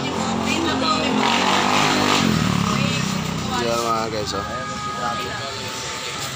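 A small motorcycle engine passing close by, its pitch dropping as it goes past about two seconds in.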